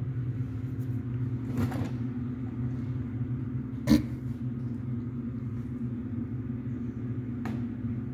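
A steady low machine hum, with a single sharp knock about four seconds in.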